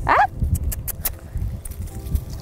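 A woman's sharp "ah!" used as a correction to a dog, then a few light clicks and rustling over a low, uneven rumble.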